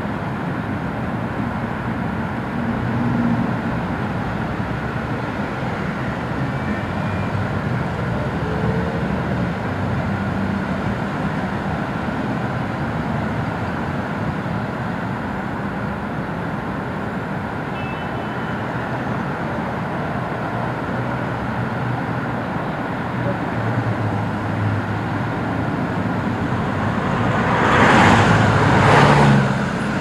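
Steady road traffic noise, a continuous low rumble and hiss, with two louder rushes near the end.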